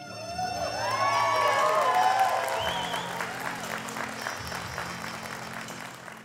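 Audience applauding and cheering an honoree at a graduation ceremony, with voices shouting and whooping over the clapping in the first three seconds. Soft background music plays underneath.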